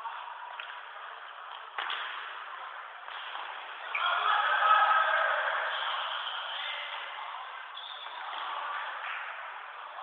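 Futsal play in a sports hall: a sharp ball kick about two seconds in, then voices calling out from about four seconds on, echoing in the hall.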